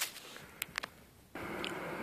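Faint background hiss with two small clicks, a brief drop to complete silence about a second in, then a steady low hiss.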